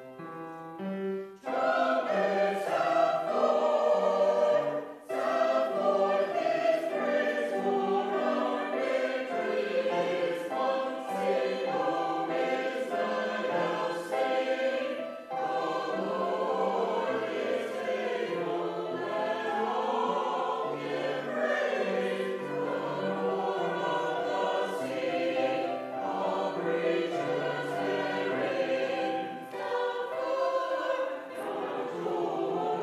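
Mixed church choir singing an anthem, entering about a second and a half in after a few piano notes and then singing on steadily.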